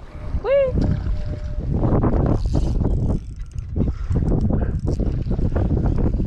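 Loud wind buffeting the camera microphone, a dense low rumble mixed with rustling and crackling handling noise as the camera is moved.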